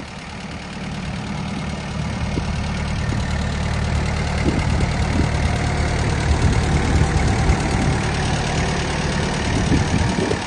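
Tractor engine running steadily with a low drone, growing louder over the first few seconds and then holding.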